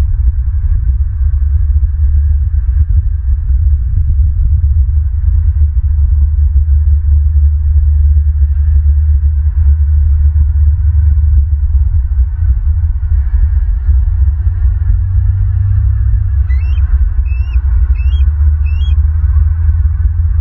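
Loud, steady low rumble that flutters constantly, typical of wind buffeting an outdoor microphone. Near the end a bird gives four short chirping notes, a little under a second apart.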